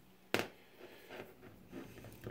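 A single sharp click about a third of a second in, then faint handling sounds as a folding knife is moved by hand and laid on a cutting mat.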